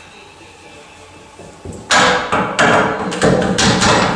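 A man straining through the last rep of a barbell military press, with hard, rough breaths and grunts in quick succession that start about two seconds in, after a quieter stretch.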